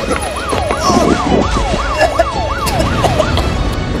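Emergency vehicle siren in a fast yelp: a wailing tone sweeping up and down about three times a second.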